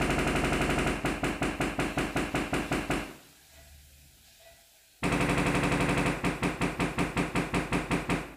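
Sony HT-A9 wireless speakers playing their Sound Field Optimization measurement signal, a rapid train of pulses, as the system calibrates itself to the room. Two bursts of about three seconds each, with a pause of about two seconds between them.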